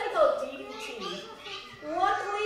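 People talking, with a child's voice among them.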